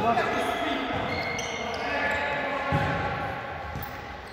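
A futsal ball kicked and played on a sports-hall floor, with one thud about two-thirds of the way in. There is a short shout at the start, and everything echoes in the large hall.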